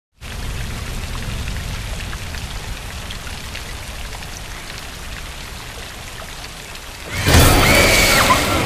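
Heavy rain falling steadily, with scattered drops ticking over a low rumble. About seven seconds in, a much louder sound breaks in suddenly, with a high wavering tone over it.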